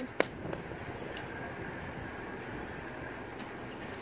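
Steady outdoor background hum with a single sharp knock just after the start.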